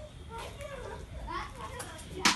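Faint background voices: high-pitched voices talking and calling, as of children playing, with no single loud event.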